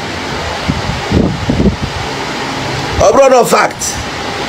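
A man's voice: low murmuring in the middle, then a short clear burst of speech near the end, over a steady background noise.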